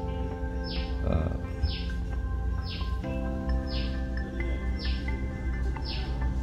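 Roland TD-8 drum sound module playing a built-in pattern: sustained chords that change about every three seconds, with a short falling swish about once a second.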